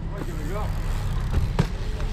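BMX tyres rolling on asphalt with wind on the microphone, a steady low rumble, and a single sharp knock about one and a half seconds in.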